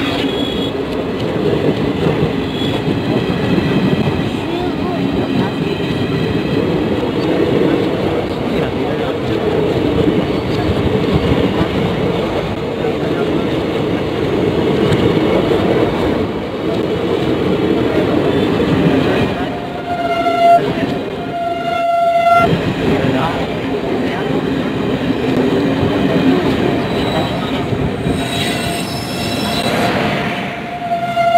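Passenger train coaches rolling past close by, a steady rumble of wheels on the rails throughout. About twenty seconds in, two short horn blasts sound.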